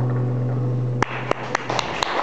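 Final guitar chord of a song ringing out and stopped short about a second in, followed by a few scattered hand claps as the audience begins to applaud.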